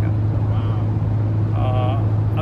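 Steady low drone of a passenger van's engine and road noise heard inside the cabin, with a short voice near the end.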